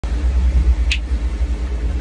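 Steady low rumble with a single sharp finger snap from a child about a second in.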